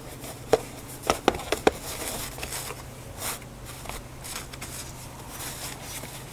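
Insulating sleeve being worked down over a car battery's plastic case by hand: a few sharp clicks and knocks in the first two seconds, then the sleeve scraping and rustling against the case.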